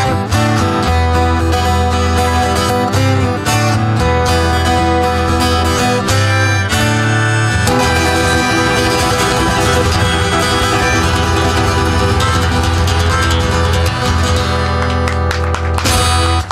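Live pop-folk music: two amplified acoustic guitars playing the instrumental close of a song, strummed chords with a strong low bass line, with no singing.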